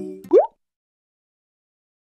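A man's held sung note over ukulele ends, followed at once by a single short rising 'plop' sound effect; then the sound cuts off suddenly.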